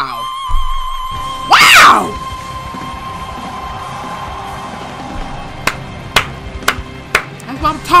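A male singer holds one long, high sung note that fades out about four to five seconds in. A loud cry with falling pitch breaks over it about one and a half seconds in, and a few sharp knocks sound near the end.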